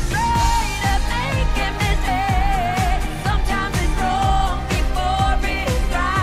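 Pop song: a woman singing the lead melody over a steady electronic beat and bass.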